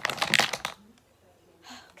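Rustling and a quick cluster of knocks in the first second from a hand handling plush toys right beside the phone's microphone.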